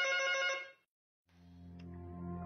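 A telephone ringing, a steady electronic ring that stops under a second in; soft music then fades in.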